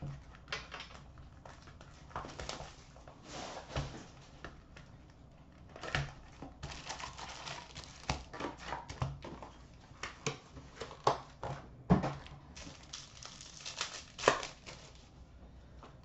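Trading cards being handled by hand: a card pack opened with crinkling, then cards shuffled and set down on a glass counter in a scattered run of light clicks and taps.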